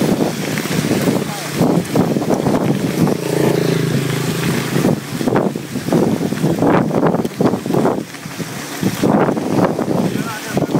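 Wind buffeting the microphone of a camera on a mountain bike riding down a dirt road, rising and falling in gusts.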